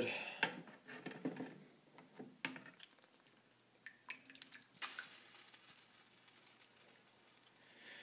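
Kitchen tongs knocking a few times against a saucepan of hot water, then water splashing and dripping about four seconds in as a GPS unit is lifted out of the pot.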